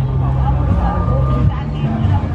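Background music with a low bass line that changes note about every half second, and a voice over it.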